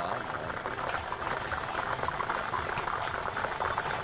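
Lottery balls clattering nonstop as they are mixed inside a clear spherical drawing machine, a dense, even rattle of many small knocks before a ball is drawn.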